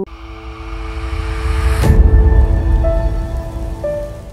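Closing logo sting: a swelling whoosh builds to a bright hit about two seconds in, over a deep rumble and a few held synth tones that step to new notes near the end.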